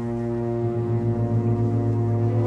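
String orchestra holding a sustained chord of several steady notes, with a low note coming in about half a second in.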